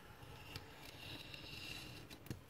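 Craft knife drawn along a metal ruler, slicing a thin strip off a sheet of scrapbook paper on a cutting mat: a faint, steady scratchy hiss of the blade through the paper, starting about half a second in.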